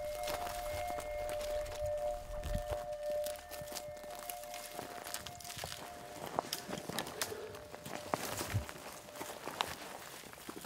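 Two held notes of background music that end about halfway through, over footsteps and crackling as a person pushes through dry desert scrub.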